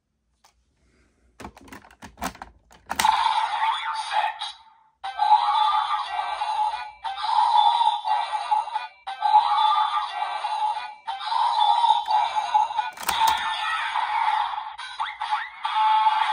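Clicks from the Monster Raise Buckle being fitted into a Desire Driver toy belt, then the belt's electronic standby sound playing through its small built-in speaker as a thin, bass-less loop of short repeating phrases. About 13 s in a sharp click as the buckle is worked, and the toy audio carries on.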